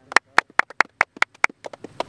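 Hands clapping in a quick, even rhythm, about five claps a second.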